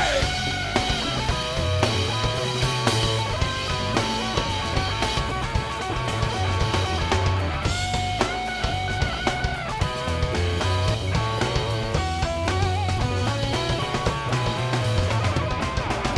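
Rock band playing live, recorded from the soundboard: electric guitar lines over bass and drum kit in an instrumental stretch with no vocals.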